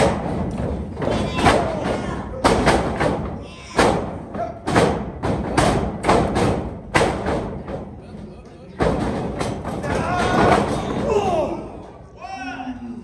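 Pro wrestlers trading strikes in the ring: a string of sharp smacks and thuds, roughly one a second, with shouting voices between them and more shouting near the end.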